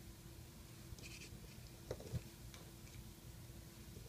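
Faint handling sounds of rubber loom bands being stretched and placed onto plastic loom pegs: a soft rustle about a second in and a few small knocks around two seconds, over a faint steady hum.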